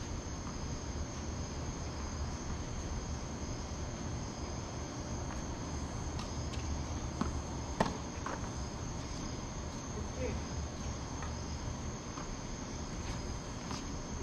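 A steady high chirring of crickets or other night insects. One sharp tennis ball strike about eight seconds in is the loudest sound, with a few fainter knocks around it.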